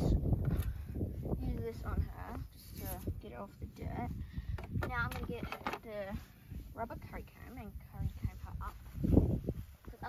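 Indistinct talking through most of the stretch, with low rumbles near the start and again about nine seconds in.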